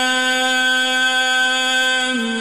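Male Quran reciter holding one long vowel at a steady pitch: the drawn-out madd of the opening letters 'Alif Lām Mīm' in melodic mujawwad recitation.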